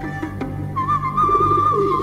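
Dark film-score drone with a wavering whistled melody coming in about three-quarters of a second in, over which a pigeon coos with a low burbling call in the second half.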